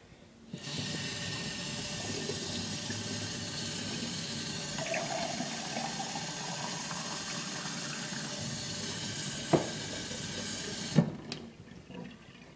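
Kitchen tap running steadily into a glass for about ten seconds, then shut off abruptly. There is a sharp knock shortly before it stops and another as it stops.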